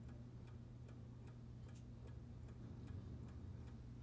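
Faint, even ticking, about two ticks a second, over a low steady hum.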